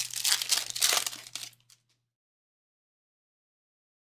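Foil wrapper of a Topps Chrome Update baseball card pack being torn open and crinkled by hand, for about two seconds before it stops.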